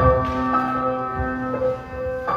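Instrumental break of a slow pop song: sustained keyboard chords with a bell-like tone, new notes struck about every half second to a second.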